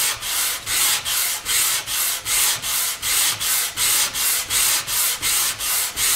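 220-grit sandpaper in a hand sanding block rubbed back and forth over a stained quilted maple guitar top, a steady rasping at about two to three strokes a second. It is sanding the dark stain back off the surface, leaving it in the end grain to bring out the figure.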